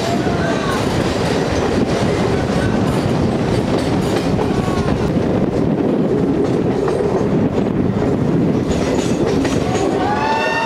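Moving passenger train running on the rails: a loud, steady rumble and clatter of wheels, heard from an open door as the train passes through tunnels.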